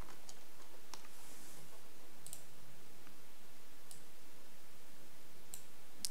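Steady faint hiss with about five soft, scattered clicks from a computer mouse.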